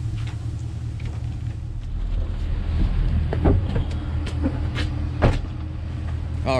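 Work truck's engine running steadily at idle, with a few sharp knocks about halfway through and near the end.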